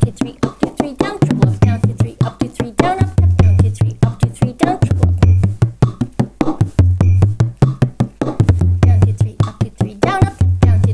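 Bodhrán played with a tipper in a 9/8 slip-jig rhythm at about five strokes a second, with a deep accented down stroke sounding the drum's low boom about every two seconds, over a backing tune.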